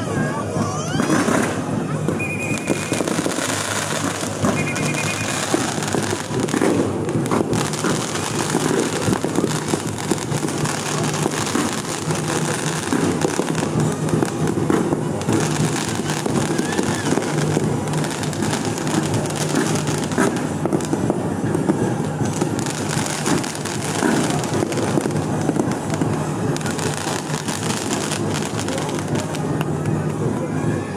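Fireworks going off overhead in a continuous barrage of bangs and crackles, over a crowd's voices. Two brief high whistles sound about two and five seconds in.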